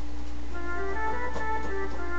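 Edirol HQ Orchestral software instrument playing its default flute patch: a few sustained notes, starting about half a second in, over a steady low hum.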